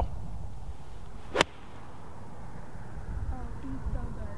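A golf pitching wedge striking the ball from the fairway turf: one sharp, crisp click about a second and a half in.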